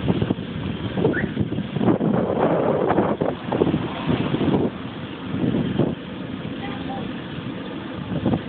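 Traffic noise from the street beside the sidewalk, swelling loudest around two to four seconds in, with wind buffeting the microphone.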